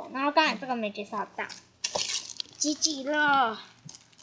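Crinkling of a thin clear plastic bag as a squishy toy is pulled out of it, loudest about halfway through. A girl's voice is heard in short unworded bits before and after it.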